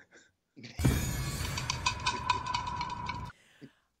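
A played-in sound effect. It starts about a second in and runs for about two and a half seconds as a rapid, dense clicking clatter over a steady tone, then cuts off abruptly.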